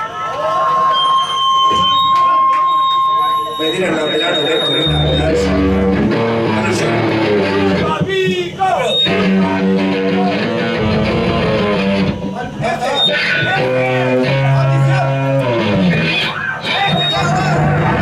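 Electric guitar and bass guitar played loosely through amplifiers, with no drums, over crowd chatter. A single note is held for about three seconds near the start, then the notes change every second or so.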